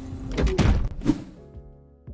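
Logo intro sting: a whooshing hiss leading into a heavy thud about half a second in and a second hit near one second, after which a musical chord rings out and fades.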